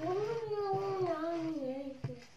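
One long unbroken wail lasting about two seconds. It rises at the start, wavers, and falls in pitch toward the end.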